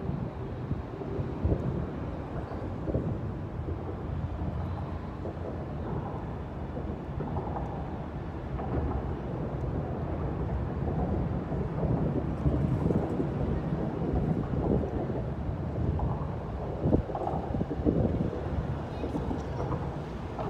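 Wind buffeting a phone's microphone outdoors: a continuous low rumble that swells and eases in gusts.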